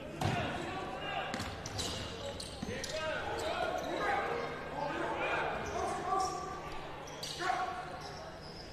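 A basketball being dribbled on a hardwood court, the bounces echoing in a large, mostly empty hall, with players' voices calling out on the court.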